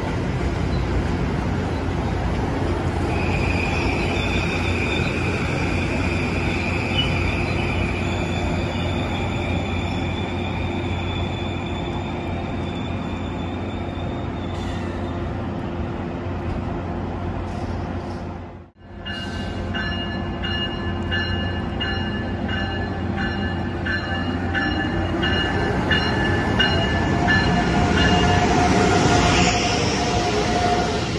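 A Metro-North Kawasaki M8 electric train running past, with a high, steady wheel squeal over its rumble in the first part. After a sudden break in the sound, an Amtrak Acela high-speed train pulls into the station, growing louder as it comes alongside.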